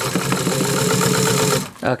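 Vintage Pfaff 30 straight-stitch sewing machine running steadily at speed, stitching through four layers of heavy coated vinyl, then stopping suddenly near the end.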